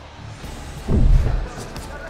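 A deep booming hit about a second in, with a falling pitch, over background music.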